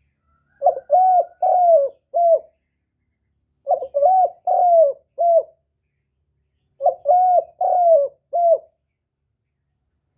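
Spotted dove cooing: three phrases of four coos each, the third coo of each phrase the longest, coming about every three seconds.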